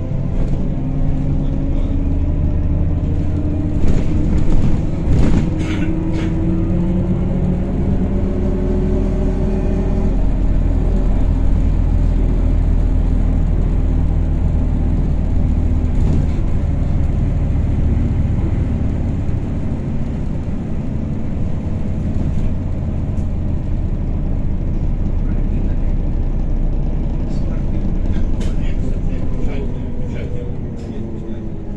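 Inside a MAZ-103T trolleybus under way: a steady low rumble from the road and running gear, with the electric traction motor's whine slowly rising in pitch over the first ten seconds as the trolleybus picks up speed. A few short rattles and knocks come about four to six seconds in.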